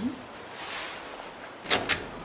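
Dover hydraulic elevator's sliding doors starting to close after the door-close button is pressed: a steady hiss, then two sharp clicks near the end.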